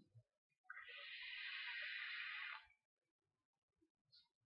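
A steady hiss of air drawn hard through a rebuildable vape atomizer for about two seconds, with its twisted 24-gauge coil firing at 50 watts, then cut off.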